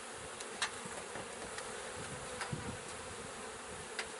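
Honey bees buzzing in a steady hum around an open hive, with a couple of faint knocks as the wooden hive cover is set back on.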